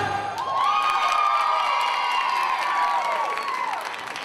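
Audience cheering and screaming with clapping as the music cuts off. High voices hold a long shout that falls away near the end.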